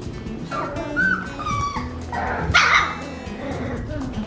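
Four-week-old golden retriever puppies whining and yipping in a series of short, high cries, the loudest yelp about two and a half seconds in. Background music with a steady beat plays underneath.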